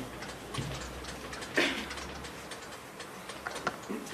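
A few light, scattered ticks and taps, the clearest about a second and a half in and two close together near the end, over a low hum that fades about halfway through.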